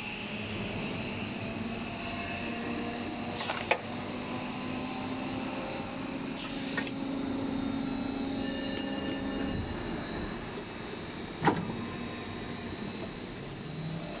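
Blow molding machine running in a factory: a steady mechanical hum with several whining tones, broken by two sharp knocks, about four seconds in and again about eleven seconds in.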